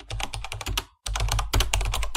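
Rapid keyboard-typing clicks, about ten a second, with a short break about a second in.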